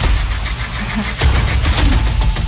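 Movie trailer soundtrack: dramatic music over a heavy low rumble, with a louder surge of booming hits a little over a second in.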